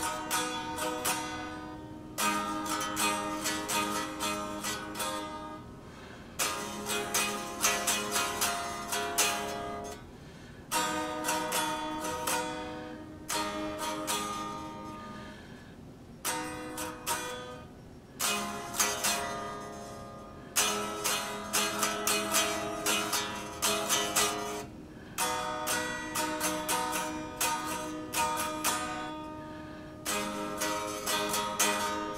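Home-built Telecaster-style guitar kit played unplugged, chords strummed in short phrases of a few seconds with brief pauses between them. A capo on the fourth fret works around a bent neck that keeps the first three frets from sounding cleanly.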